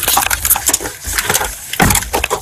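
Quick knocks and rustling clatter of gear jostling against a body-worn camera, with a louder thump near the end.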